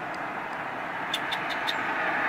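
Steady hum of road traffic going by, growing gradually louder, with four short high ticks a little over a second in.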